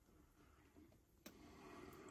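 Near silence: room tone, with one faint click about a second and a quarter in.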